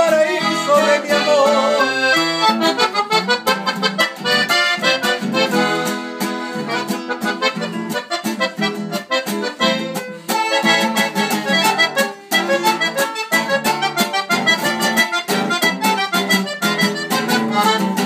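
Piano accordion playing the melody over a strummed acoustic guitar, an instrumental passage between sung verses.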